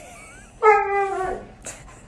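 A husky-type dog gives one drawn-out whining call, about a second long, starting about half a second in and sliding slightly down in pitch at the end. A faint short squeak comes just before it and a small click comes after it.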